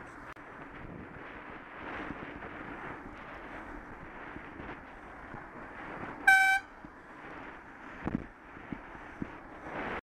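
Steady road and wind noise from riding a bicycle in traffic, with a single short horn toot about six seconds in as a car passes close alongside. A few low knocks follow near the end.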